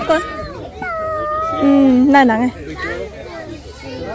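Children's and adults' voices at close range, with one long, held call through the middle.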